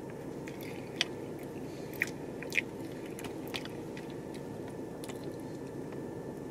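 Close-up chewing of a soft, frosted graham cracker cookie topped with raspberry jam, with a few sharp wet lip smacks and mouth clicks, the loudest about a second, two seconds and two and a half seconds in, over a steady low hum.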